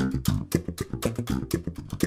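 Electric bass played with the double-thumb slap technique: fast, even thumb down-and-up strokes crossing between strings, about eight sharp-attacked notes a second.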